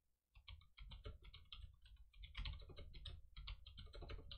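Faint typing on a computer keyboard: a quick, irregular run of key clicks that gets busier and a little louder about halfway through.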